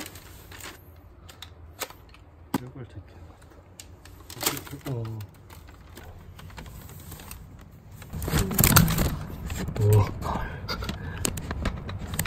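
A Dyson V10 cordless vacuum's clear dust bin being emptied into a plastic bag: scattered sharp clicks and knocks of the bin as it is handled, and crinkling plastic, loudest in a rustling burst about eight to nine seconds in.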